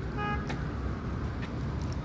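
A short single beep, like a vehicle horn toot, about a quarter second in, over the steady low rumble of an idling vehicle and street traffic.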